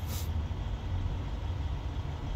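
Steady low engine rumble of a running vehicle, heard from inside its cab.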